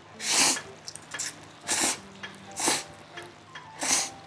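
Loud slurping of thick Jiro-style yakisoba noodles, four noisy slurps about a second apart.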